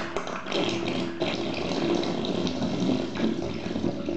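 The last of a bath's water draining down the plughole through its metal strainer: a continuous watery rush with irregular bubbling.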